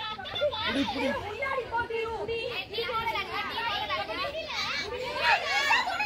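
Many girls' voices shouting and calling out at once during a kabaddi raid, overlapping throughout.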